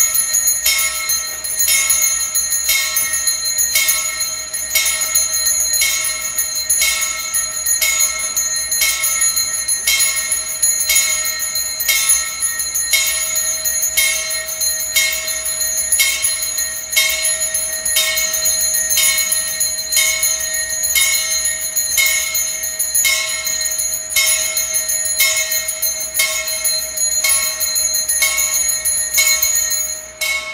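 Hand-held altar bells, a cluster of small sanctus bells, shaken in a steady, even rhythm of about two rings a second, then cut off abruptly at the end. They ring to mark the blessing with the Blessed Sacrament in the monstrance at Benediction.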